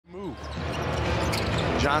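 Arena sound of a live NBA game: crowd noise with a basketball bouncing on the hardwood court. It fades in from silence at the start, and the play-by-play commentator's voice comes in near the end.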